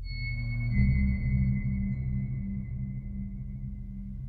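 Electronic modular synthesizer music from Mutable Instruments modules and a Behringer 2500. A high, steady, sonar-like tone comes in at the start and slowly fades over about three seconds. Beneath it a low, pulsing drone swells about a second in.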